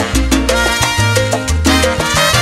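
Salsa music: an instrumental passage without vocals, with a bass line stepping from note to note about twice a second under dense band parts and steady percussion.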